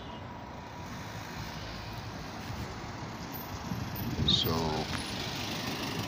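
Road traffic noise: a steady hum of vehicles that grows louder toward the end as a pickup truck passes close. A voice is heard briefly about four seconds in.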